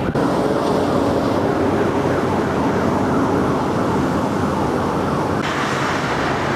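Street traffic noise with a siren's repeated rising and falling wail over it. The sound changes abruptly shortly before the end.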